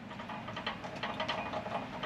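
Faint steady background noise with a few light clicks, with no clear single source.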